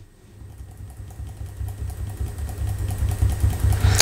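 An HP laptop powering up: a low hum that grows steadily louder, with faint quick taps as the F11 key is pressed over and over.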